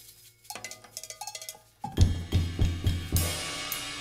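A few light, sparse clinks of small hand percussion, then, about two seconds in, a drum kit comes in loud with heavy bass drum and tom strokes under washing cymbals, cresting in a cymbal crash, in free-jazz improvisation.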